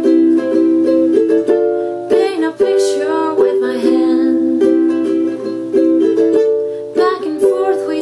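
An acoustic ukulele strummed in a steady rhythm, its chords changing about every second.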